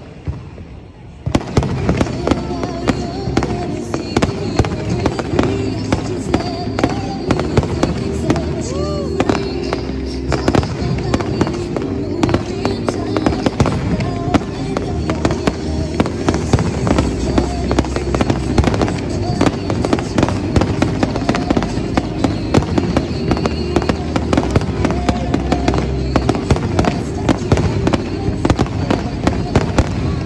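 Aerial fireworks bursting in a dense, continuous barrage of bangs and crackles, starting suddenly about a second in, over music with steady held tones.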